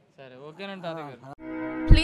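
A man's voice trails off. About a second and a half in, an outro jingle starts with steady tones and a deep thump.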